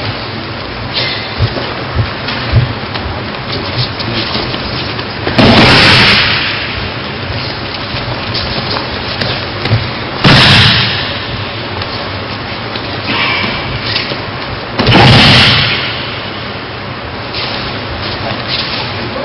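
Three loud crashes of a partner being thrown and taking breakfalls onto tatami mats, about five, ten and fifteen seconds in, each lasting under a second, over a steady hall hiss. A few lighter knocks on the mat come in the first three seconds.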